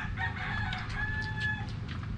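A rooster crowing once, in choppy notes that end in a long held note, over a steady low hum.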